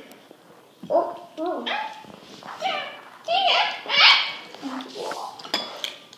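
A child's voice talking in short bursts, after a brief pause.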